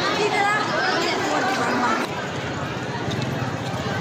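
Crowd chatter: several people talking at once as they pass close by. About halfway through the voices drop back to a steadier, noisier hubbub of a busy street.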